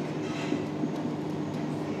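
Steady room noise with a low, even hum, under the soft strokes of a marker writing on a whiteboard.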